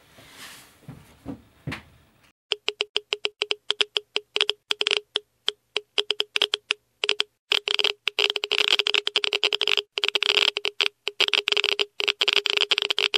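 A run of sharp, irregular clicks that starts about two and a half seconds in and comes faster and faster until the clicks run almost together.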